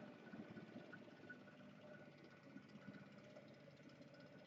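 Near silence: faint, steady low background hum from the surroundings, with no distinct event.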